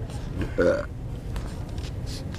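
One short, low vocal sound from a person about half a second in, over a steady low background hum.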